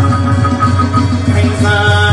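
Chầu văn (hát văn) ritual singing: a man sings held, ornamented notes to the accompaniment of a plucked đàn nguyệt (moon lute). He moves to a new note about one and a half seconds in.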